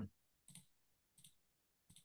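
Three faint computer mouse clicks, about two-thirds of a second apart, in otherwise near silence.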